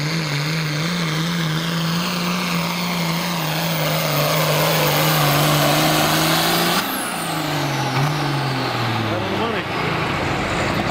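Turbocharged diesel engine of an International pulling tractor running hard at a steady pitch under full load with the sled. About seven seconds in the throttle is pulled back: a high turbo whistle winds down and the engine speed falls away as the pull ends.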